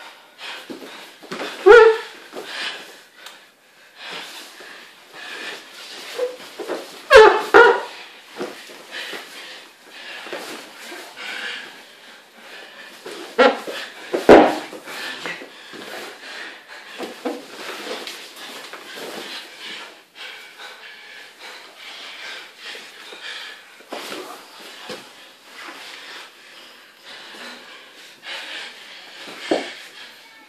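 Heavy breathing and straining of two grapplers rolling on foam mats, with loud sudden sounds about 2, 7 and 14 seconds in.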